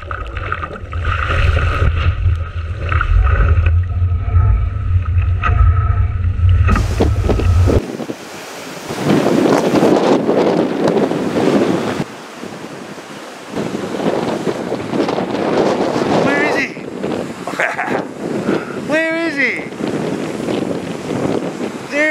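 Wind buffeting a board-mounted action camera's microphone over water rushing past a kite foilboard. Then, after a sudden change about eight seconds in, breaking surf and wind, with a few brief voices near the end.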